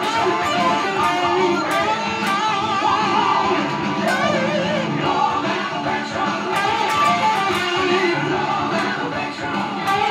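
Electric guitar lead from a white Les Paul-style guitar through a Marshall amp, with notes bending up and down, played over a rock backing track with drums.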